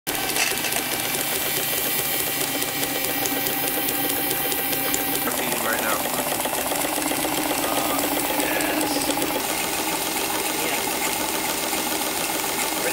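Small live-steam engine running steadily, belt-driving an antique US&S railway semaphore motor that is spinning as a DC dynamo: a fast, even mechanical clatter.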